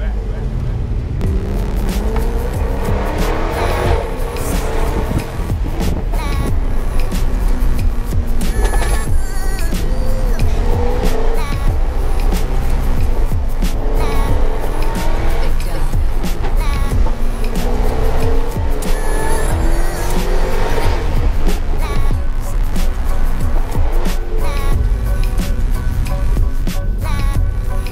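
Sports car engines accelerating hard, rising in pitch through the revs and dropping back at each gear change, several times over. Background music with a steady beat plays along with them.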